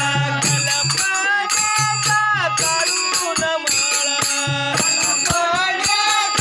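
Devotional group singing (bhajan) with a lead voice, over rhythmic percussion that keeps a steady beat of sharp strokes.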